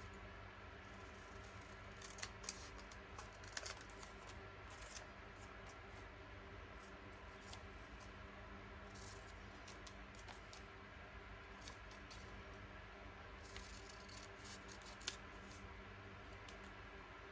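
Scissors snipping a paper label, faint cuts and paper scrapes scattered throughout, with one sharper click about a second before the end.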